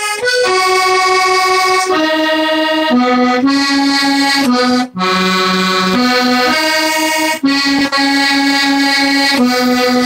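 A small accordion, the "wee box", playing a traditional tune: sustained reedy notes stepping from one to the next, with a brief break in the sound about five seconds in.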